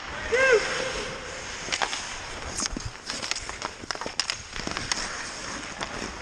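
A short one-syllable shout just after the start, then, from about two seconds in, a run of sharp clacks and scrapes of hockey sticks and skates on the ice.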